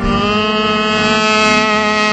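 A man's voice holding one long, steady sung note into a handheld microphone, amplified and loud.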